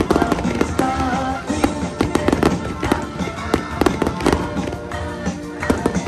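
Aerial fireworks going off in quick, irregular succession: many sharp bangs and crackles, several a second, over music playing at the same time.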